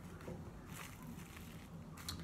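Faint, soft rustles of white merino wool fleece being pulled apart by hand and laid onto bubble wrap, a few light brushes over a low steady room hum.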